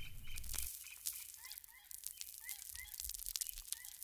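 The tail of a hip-hop track fading out in the first second, then faint short rising chirps a few times a second, bird-like, with scattered light clicks.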